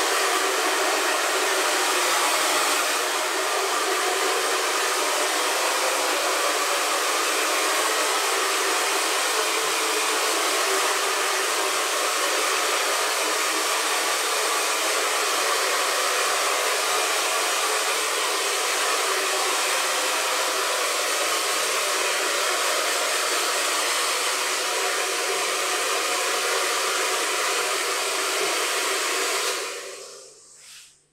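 Handheld hair dryer running steadily while blow-drying short hair, a loud even rush of air that cuts off abruptly at the very end.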